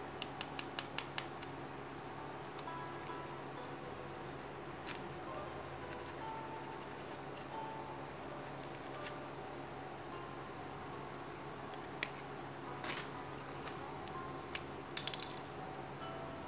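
Light clicks and taps from a pen and a rubber sandal insole being handled. A quick run of about seven clicks comes at the start, a few single clicks follow later, and a short clatter comes near the end. Faint music plays underneath.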